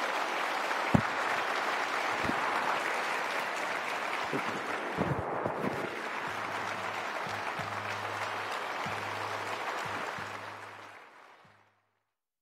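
Audience applauding steadily, fading out near the end, with a few low thumps and a faint low hum underneath.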